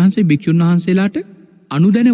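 Only speech: a man, a Buddhist monk, preaching a sermon in Sinhala, with a short pause past the middle.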